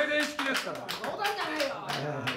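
A small audience clapping, with voices talking over it.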